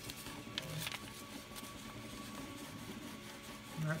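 Faint steady hum and whine of an Ultimaker 3 3D printer standing with its nozzle lowered, with a few light rustles of a sheet of paper being slid under the nozzle to gauge the gap.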